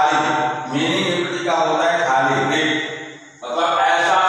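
A man's voice speaking in phrases, with a short pause a little over three seconds in.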